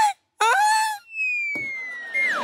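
A brief vocal exclamation, then a comic sound effect: a thin whistle tone sliding slowly downward. Studio audience laughter comes in under it about one and a half seconds in.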